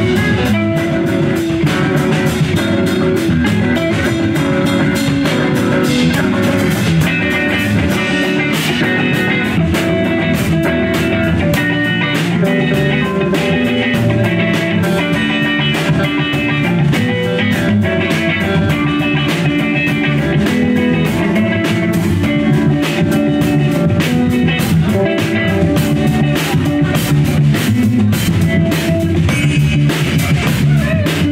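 A live rock band playing an instrumental passage: electric guitars over a steadily hit drum kit, loud and continuous.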